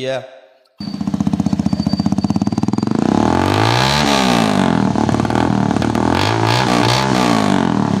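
Modified 200 cc motorcycle engine running loud. It comes in suddenly about a second in with a fast pulsing beat, then is revved up and back down twice.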